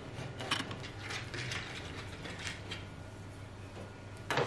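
A blade scraping and prying the old covering off a steamer trunk's wooden lid, the covering crackling as it lifts: a string of short, irregular scratchy crackles.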